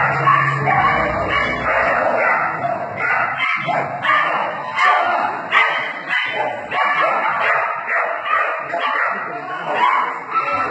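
A dog barking and yipping over and over, barely pausing, over a background of hall noise.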